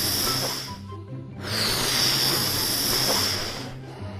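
A person blowing hard by mouth into a rubber balloon to inflate it: two long hissing blows with a short pause for breath between them. Background music plays underneath.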